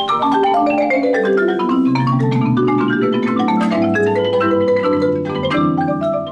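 A mallet percussion ensemble of marimbas and vibraphone plays together. Over the first two seconds a quick run of notes falls from high to low, then busy figures continue above held low notes.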